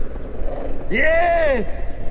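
A single drawn-out voice about a second in, rising and then falling in pitch, over a low steady rumble.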